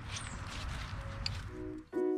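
Low, even background noise, then background music with steady pitched notes fading in about one and a half seconds in.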